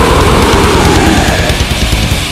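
Loud melodic death metal: heavily distorted guitars over dense, fast drumming.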